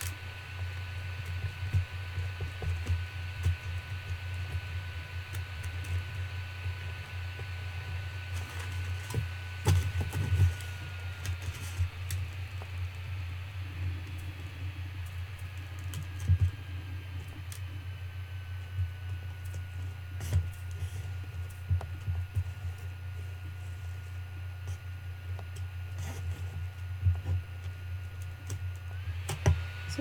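A plastic palette knife scraping and tapping against a foam plate as gritty texture paste mixed with sand is stirred, in irregular small clicks and scrapes, over a steady low hum.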